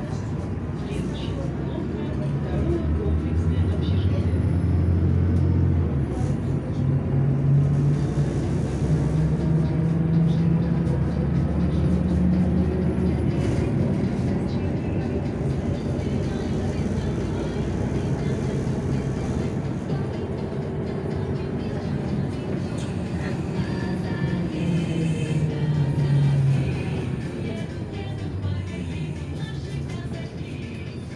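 City bus engine and drivetrain heard from inside the cabin while the bus drives. There is a low steady rumble, and the engine note climbs as the bus picks up speed over the first dozen seconds. It eases off and gets quieter near the end.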